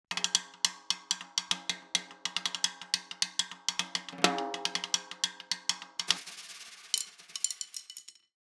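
Snare drum played in a quick run of crisp strokes, the drum ringing under them, with a stronger accent about four seconds in. Near the end it turns to a quieter, hazier stretch with a few scattered hits, then stops.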